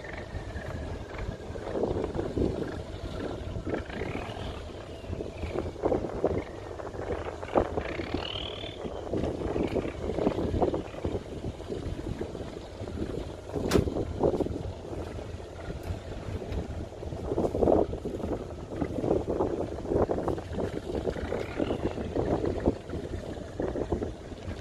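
Harbour ambience of fishing boats: a steady low diesel-engine rumble with irregular gusts of wind on the microphone, and one sharp click about fourteen seconds in.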